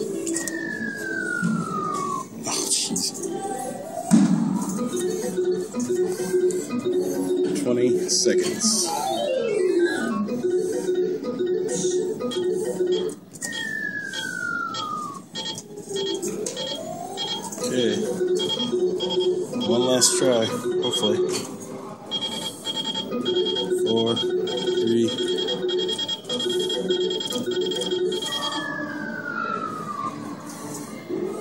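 Electronic arcade machine music: a looping organ-like tune with a falling pitch sweep that comes back about every 14 seconds, and shorter rising sweeps between.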